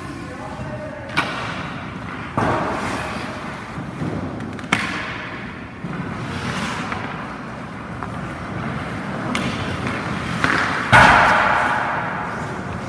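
Ice hockey shooting drill: sharp cracks of sticks striking pucks and pucks hitting the goalie's pads, echoing in the rink, with skate blades scraping the ice in between. There are four cracks; the loudest comes near the end and is followed by a longer scrape.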